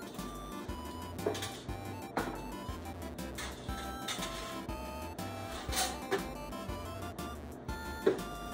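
Background music: short melody notes over a repeating bass line.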